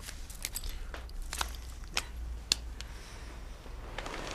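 A handful of light, sharp clicks and knocks, about five spread over the first two and a half seconds, over a steady low hum.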